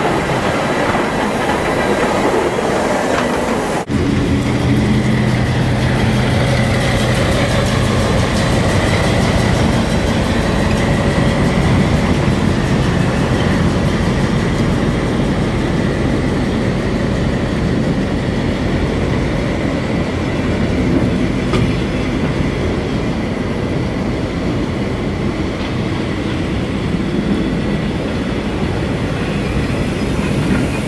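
A diesel locomotive hauling old passenger coaches passes slowly, its engine humming steadily over the noise of the wheels on the rails. The first few seconds, before a sudden cut, are a steam locomotive rolling slowly close by.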